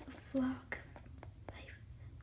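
Mostly speech: a quiet voice says a couple of words. A few faint light taps follow, from a small plastic toy figure moved on a wooden tabletop.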